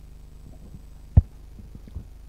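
Steady low electrical hum from the meeting-room microphone system, broken about a second in by one sharp, loud low thump of a table microphone being bumped or handled, with a smaller click near the end.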